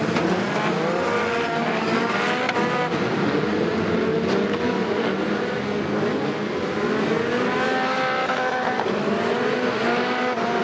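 A pack of winged BriSCA stock cars racing on a shale oval, several engines overlapping, each rising and falling in pitch as the drivers accelerate out of the bends and back off.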